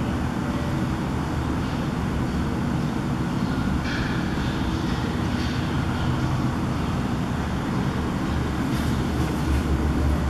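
Steady low background rumble, with a few faint, brief higher sounds about four seconds in and again near the end.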